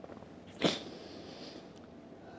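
A man's single short, sharp breath noise, a sniff or snort-like burst picked up close by his lapel microphone about half a second in, trailing off in a faint hiss.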